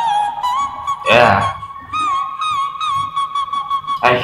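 Male singer holding a high, flute-like sung note with a slight waver in the pitch, a display of vocal acrobatics. A short, loud falling vocal swoop cuts across it about a second in.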